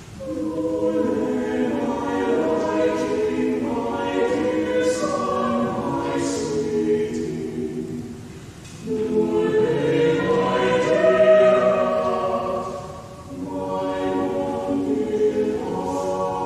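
A mixed church choir of men's and women's voices singing, in sustained phrases with short breaks about 8½ and 13 seconds in.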